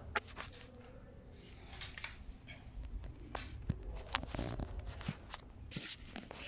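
Scattered light knocks, clicks and brief rustles from someone moving about and handling things, with no steady tool running.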